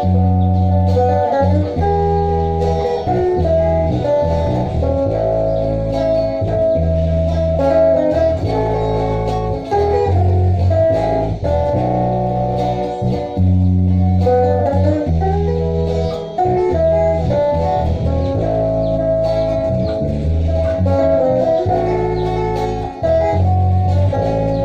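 Instrumental electric guitar trio: a lead guitar carries the melody in sustained notes over a strummed rhythm guitar and a bass guitar holding low notes that change every second or two.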